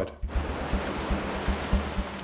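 Sea water rushing, starting a moment in, over low background music.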